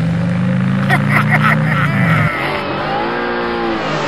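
Vehicle engine sound effect: a steady low engine note rises slightly for about two seconds and cuts off. Engine notes that rise and fall in pitch follow.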